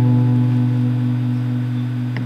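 A chord on an Ibanez AS-100 semi-hollow electric guitar, played through a Peavey Studio Pro amp, left to ring and slowly fading as the song ends.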